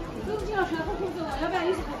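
People chatting, voices talking over one another.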